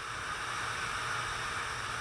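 Steady hiss of background noise with no speech.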